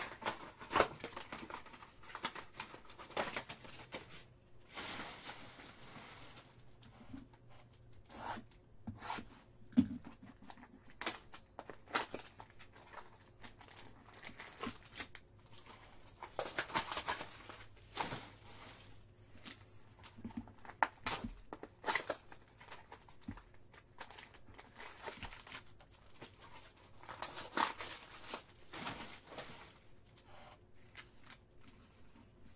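A sealed trading-card hobby box being torn open, its wrapper and cardboard ripping, and the foil card packs inside crinkling as they are taken out and set down. It comes in irregular bursts of tearing and rustling with sharp clicks.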